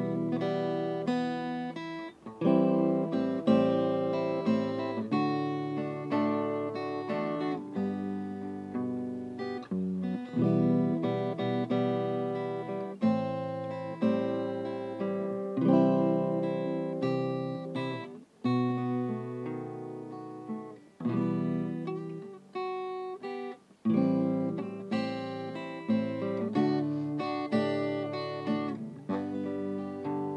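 Background music played on acoustic guitar: a steady run of plucked and strummed chords, broken by a few short pauses between phrases.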